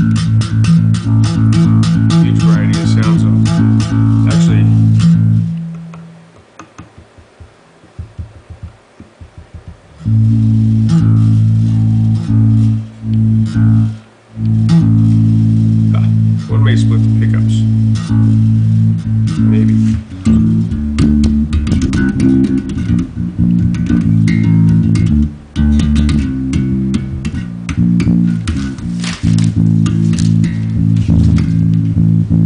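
Alembic Essence four-string electric bass with active pickups, played amplified: held low notes, then a few seconds of near-quiet with only faint string clicks, then more notes that grow busier and change more often over the last ten seconds.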